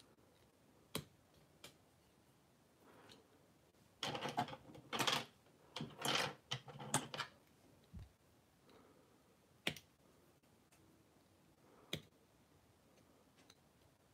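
Flush cutters snipping excess material off small 3D-printed plastic parts, with plastic being handled between cuts: single sharp clicks about a second in, near ten seconds and near twelve seconds, and a busier run of snips and plastic clicks from about four to seven seconds.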